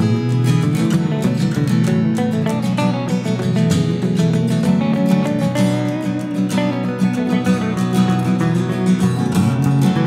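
Instrumental guitar passage: a Gretsch hollow-body electric guitar picked over a strummed acoustic guitar, with no singing.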